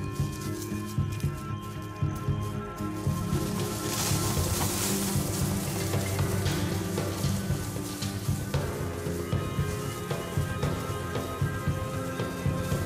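Dramatic background music: sustained chords over a steady pulsing beat, with a rushing swell in the high range about four seconds in.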